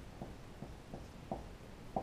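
Dry-erase marker writing on a whiteboard: a series of short, faint taps and strokes, the last near the end the loudest.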